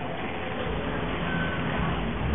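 City street traffic: a motor vehicle's engine rumbling by, with a brief high beep about halfway through.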